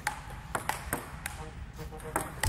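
Table tennis rally: the plastic ball clicking off the table and the paddles in quick alternation, about six sharp clicks in two seconds.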